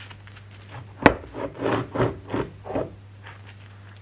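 Cut metal plate pieces knocked and slid against each other on a wooden workbench: one sharp knock about a second in, then several short scraping rubs as they are lined up to check squareness.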